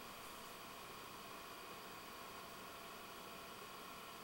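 Faint steady hiss and hum of room tone, with no distinct sound events.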